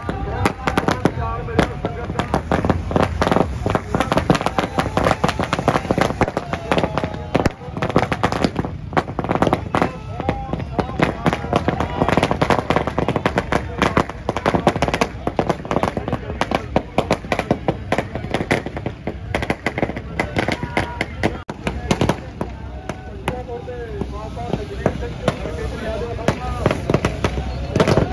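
Firecrackers going off in rapid, irregular strings of sharp pops, with crowd voices around them; the popping thins out after about twenty seconds.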